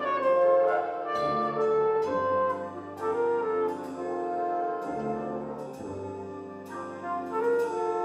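A high school jazz band playing live: brass and woodwinds, flutes and clarinet among them, sound sustained chords, with the notes changing about once a second.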